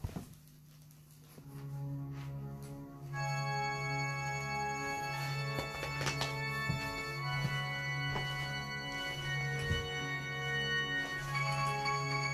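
Music: sustained organ-like keyboard chords come in about a second and a half in and fill out about three seconds in, holding long notes over a steady low bass note.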